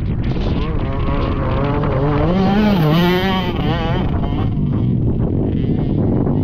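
Youth racing ATVs' engines approaching on a dirt track, their pitch rising and falling as the riders work the throttle, loudest about halfway through.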